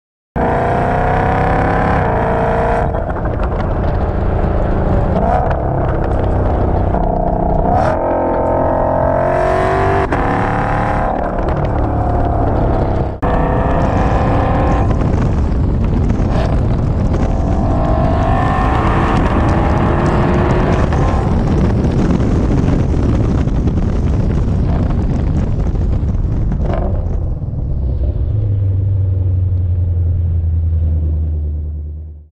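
Ford Shelby GT500's supercharged 5.2-litre V8 and exhaust under hard acceleration, its pitch rising repeatedly through the gears with short breaks at the upshifts. Near the end it eases off to a low, steady rumble.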